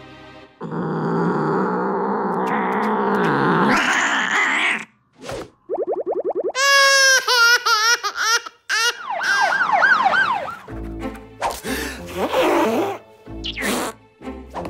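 Cartoon sound effects and music: a rising whooshing swell for the first few seconds, then warbling siren-like glides and a run of falling swooping tones, followed by music in the last few seconds.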